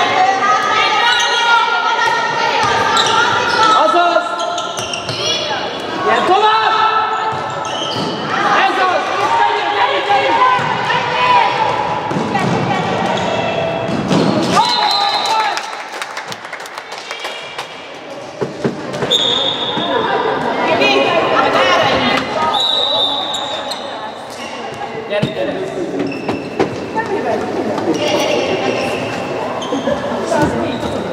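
A handball bouncing on a wooden sports-hall floor during play, echoing in the large hall, under steady shouting and calling from players and coaches.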